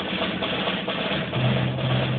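Percussion ensemble playing: many quick drum and mallet strokes over a held low note that grows stronger about one and a half seconds in.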